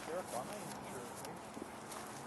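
Faint, distant voices at first, then a quiet, steady outdoor background hiss with a small click near the end.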